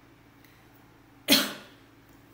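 A single sharp cough from a person, about a second and a half in, dying away quickly.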